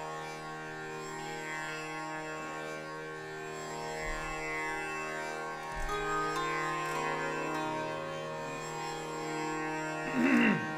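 Tanpura drone ringing steadily under sustained harmonium notes, with the harmonium moving in steps between held notes from about six seconds in, in Raga Darbari Kanada before the singing and tabla begin.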